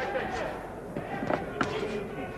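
Indistinct voices calling out around a boxing ring during a bout, with a few sharp thuds in the second half.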